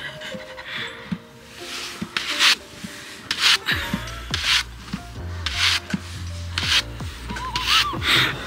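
Handheld grooming brush swept firmly over a horse's coat, about seven brisk strokes roughly a second apart.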